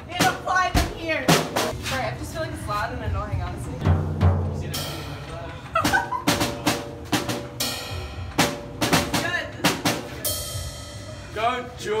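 Tama drum kit played live in loose, irregular strokes on bass drum and snare, with a cymbal crash ringing out about five seconds in and another about ten seconds in. Voices talk over the drumming.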